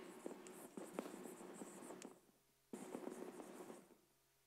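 Chalk writing on a blackboard: faint scratching and tapping strokes in two stretches, broken by a short pause in the middle.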